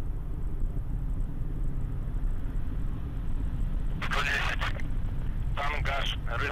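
Steady low rumble of a Soyuz-2.1a rocket's engines heard from afar during ascent, unchanging. A short radio voice callout comes in near the end.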